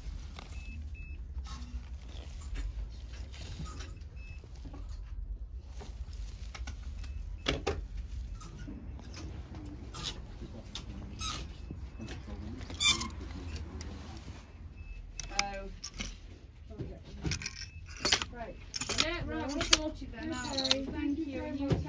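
Clothes being handled on a shop rail: wooden hangers click and slide along the rail and fabric rustles. Sharp clicks are scattered throughout, more of them in the last few seconds, over a low steady hum.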